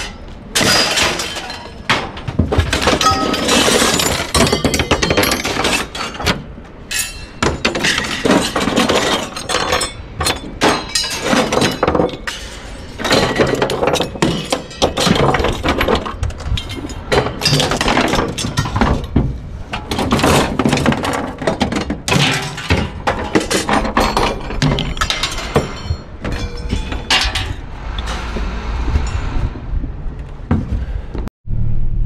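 Mixed scrap metal being thrown by hand out of a pickup truck bed onto a scrap pile: an irregular, almost continuous run of loud clanks, crashes and clattering metal.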